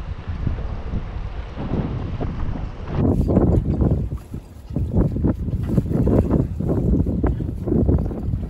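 Strong wind buffeting the microphone over choppy open water, a steady low rumble that turns louder and gustier after a sudden change about three seconds in.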